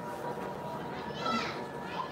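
Faint background voices, with one brief high-pitched, child-like voice a little after a second in.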